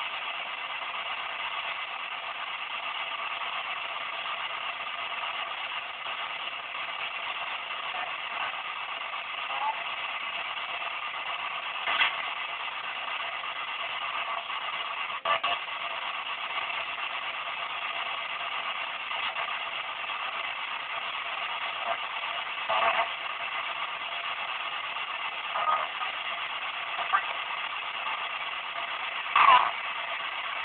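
P-SB7 spirit box (ghost box) sweeping the FM band: a steady hiss of radio static, broken by about eight brief louder blips of broadcast sound as it passes stations.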